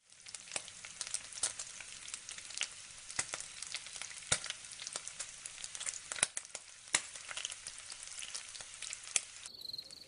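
A steady crackling hiss dotted with many sharp pops and clicks, like food frying. Near the end a high, evenly pulsing chirp starts.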